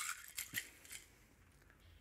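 Metal bar spoon churning crushed ice and muddled lime in a rocks glass: a few faint scrapes and clinks in about the first second.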